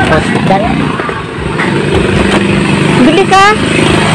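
Motorcycle engine running with a steady low hum, under brief bits of a person's voice.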